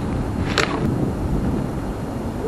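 Low wind rumble on the microphone, with a short crunch of a boot stepping through dry fallen leaves about half a second in.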